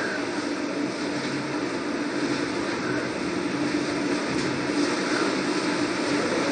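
Steady background noise with a faint low hum.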